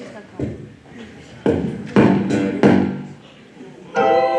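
Small live band of electric guitar and keyboard playing a sparse, stop-start figure: four struck chords and notes, each left to ring and die away.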